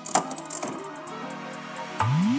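Background music under a slot-machine sound effect: spinning reels ticking quickly and lightly, with a click just after the start.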